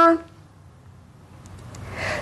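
The tail of a woman's long vowel 'ā' held at one steady, high pitch (the Mandarin first tone), stopping just after the start, followed by quiet room tone.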